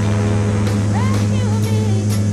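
Twin turboprop engines and propellers of a Mitsubishi MU-2 Marquise droning steadily in flight, heard inside the cockpit. A soul song is laid over the drone, with singing starting about halfway through.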